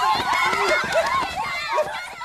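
A group of young women shouting and screaming at once, high overlapping voices yelling at a man to get out and calling him a pervert.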